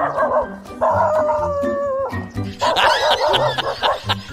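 A dog barking and yelping in fright, with several short yelps in the second half, over background music.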